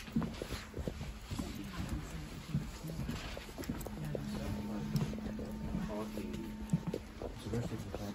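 Footsteps on a train carriage floor as someone walks along the aisle, a run of short, uneven knocks. Faint voices sound in the background, and a steady low hum comes in for a few seconds around the middle.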